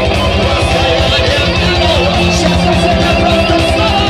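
Heavy metal band playing live: distorted electric guitars over a fast, even low drum pulse, without vocals.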